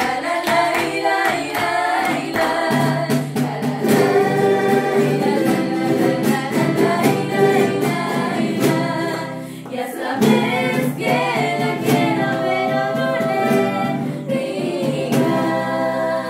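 Several young women singing a folk song together, accompanied by strummed charangos and acoustic guitars. The low accompaniment fills out about three seconds in.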